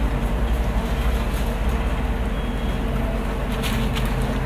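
Car engine idling steadily with a low rumble, heard from inside the car's cabin.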